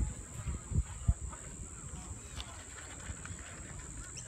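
Steady high-pitched insect drone outdoors, with a few low thumps in the first second or so.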